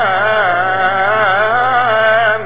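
Male voice chanting a long melismatic phrase of Syriac liturgical chant, the pitch winding and wavering on one held syllable, over a steady low hum.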